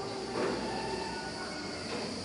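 Quiet church room tone with a faint steady hum.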